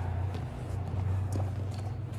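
Steady low hum of room noise, with a few faint scuffs of footsteps on a wrestling mat as two wrestlers get up and step back into stance.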